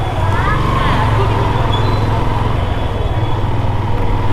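Motorcycle engine running steadily while riding on a wet road, a low rumble, with a few faint voices in the first second.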